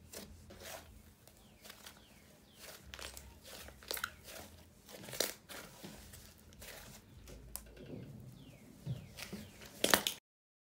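Hands squishing, pressing and stretching a soft cloud-cream clay slime, giving irregular sticky pops and crackles.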